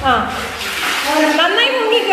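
Bathtub water splashing and sloshing as a child dunks her head and hair under and comes back up, strongest in the first second. A voice talks over it throughout.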